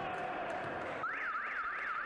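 Electronic warbling signal in a volleyball arena, a tone sweeping rapidly up and down about four times a second, coming in about a second in over the hall's background hum: the signal for a substitution.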